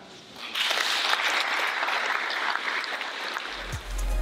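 A group of people clapping, starting about half a second in after the closing words. Music with a heavy bass beat comes in near the end.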